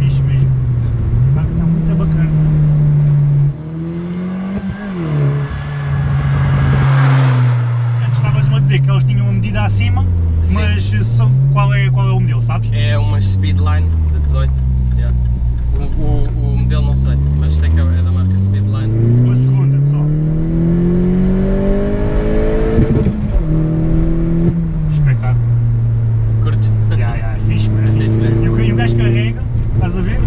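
Opel Corsa OPC's 1.6 turbo four-cylinder engine heard from inside the cabin while driving, its note falling and rising with the throttle. Near the middle the revs sink low, then climb slowly for several seconds, drop suddenly at a gear change, and settle to a steady cruise.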